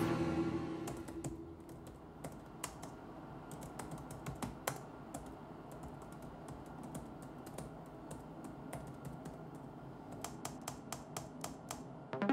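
Typing on a laptop keyboard: scattered key clicks that quicken into a burst of rapid typing near the end. A music sting fades out over the first second or two.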